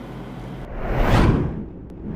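Whoosh sound effect of a news bulletin's story-transition graphic. One swoosh swells and fades away about a second in, and a second one starts right at the end.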